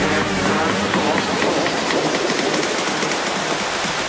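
Electronic background music in a dense, noisy stretch with no clear notes, at a steady level.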